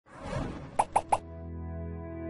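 Logo intro jingle: after a short rushing swell, three quick pops in a row, each about a sixth of a second apart. A chord is then held steady.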